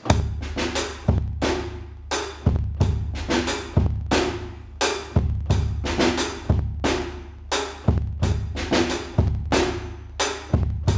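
Drum kit played in a slow cut-time groove in four: a bass-drum beat about every 1.3 seconds, with snare and cymbal strokes between.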